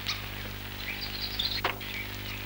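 Birds chirping faintly over a steady low hum of the old film soundtrack, with high twitters about a second in and one quick downward-sweeping chirp near the end.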